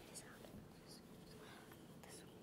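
Faint whispering among several children, hushed hissing voices barely above the room's background hum.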